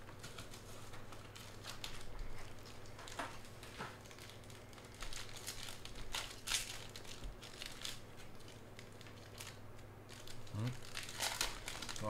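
Foil trading-card pack wrapper crinkling and tearing as it is handled and opened by hand, in irregular spurts of crackle.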